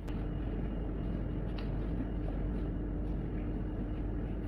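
Steady low hum of the shop's background, with a faint steady tone running under it and a few light clicks.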